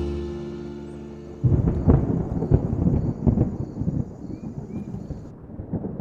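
The last notes of vibraphone-led background music ring out and fade. About a second and a half in, rain ambience starts suddenly: steady rain with irregular low rumbles and crackles.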